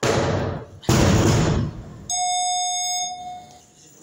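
Loaded steel barbell with bumper plates landing hard on a wooden weightlifting platform about a second in, after a first heavy impact at the start. Then an electronic signal tone sounds steadily for about a second and a half.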